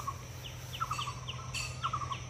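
Small birds chirping: short clusters of quick notes, repeated about once a second, over a steady low hum.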